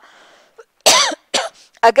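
A woman coughs once into her hand, a short sharp cough about a second in, with a smaller catch of breath just after it.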